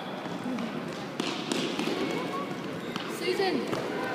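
A futsal ball being kicked and bouncing on a sports hall floor, a few sharp knocks in the first half, over a background of children's and spectators' voices echoing in the hall; a voice shouts "Susan" near the end.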